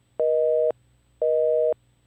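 Telephone busy signal: a two-note electronic tone beeping twice, each beep about half a second long with half-second gaps.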